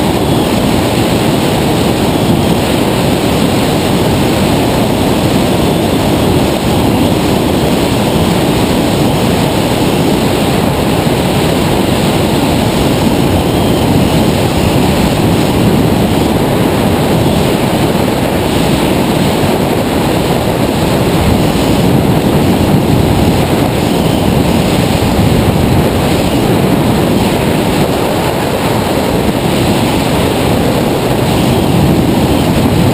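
Loud, steady wind rush on the microphone from the airflow past a tandem hang glider climbing in flight.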